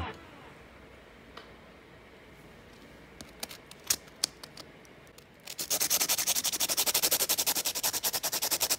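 A pencil point being sharpened on a graphite-blackened sandpaper pad: a few faint clicks, then from about halfway through a fast, even run of scraping strokes, several a second.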